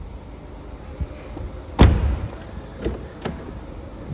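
A BMW 520d's rear car door shut with a solid thud about two seconds in, followed by two lighter clicks about a second later.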